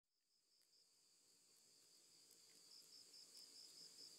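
Very faint crickets chirping in an even, pulsing trill, near silence, growing slightly louder toward the end.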